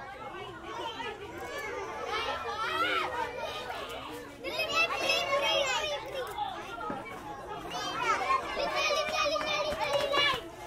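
A crowd of children talking and calling out over one another, high voices overlapping, growing louder at about the middle and again near the end.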